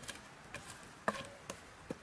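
Charcoal fire under roasting meat crackling with irregular sharp pops, over a faint hiss. A louder knock with a short ring comes about a second in, and another near the end.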